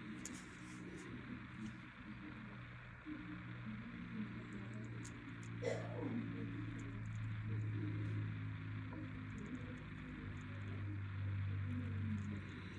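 Faint background music from a television playing in the room, with steady low tones and a few brief voice-like sounds.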